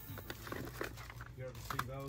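Plastic CD jewel cases clicking and knocking together as they are flipped through in a rack, with faint voices in the background.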